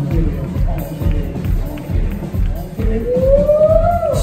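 A live band playing, a full rock-soul groove with drums and bass keeping a steady beat. Near the end a held note slides upward.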